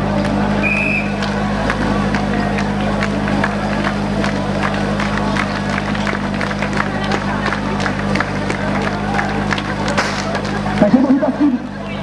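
Portable fire pump engine running steadily at idle, a low even hum under crowd noise, stopping suddenly near the end.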